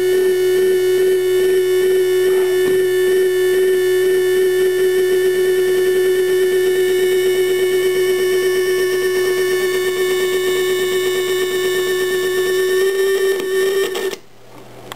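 A homemade electronic noise instrument built into a helmet-shaped metal shell holds one steady electronic tone with a fast flutter, and it cuts off suddenly at the end.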